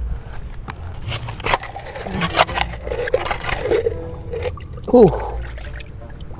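A hand digging in a muddy tide pool: muddy water sloshing and trickling, with sharp clacks and scrapes of stones and pebbles being knocked together and pulled out of the hole.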